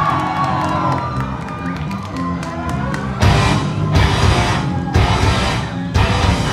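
Punk band playing live through a club PA, starting a song: held bass and guitar notes over a steady ticking for about three seconds, then the full band with drums comes in loud. A crowd cheers over the opening.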